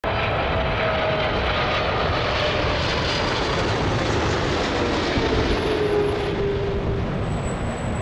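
Jet engines of an Air Canada Boeing 777 on final approach: a steady rushing roar with a faint whine that slowly drops in pitch as the airliner passes. A thin high whine joins near the end.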